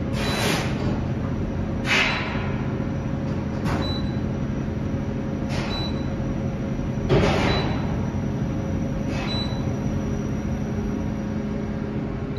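KONE traction elevator car travelling upward, with a steady hum and a whooshing rush that swells and fades about every one and a half to two seconds as the car passes each floor.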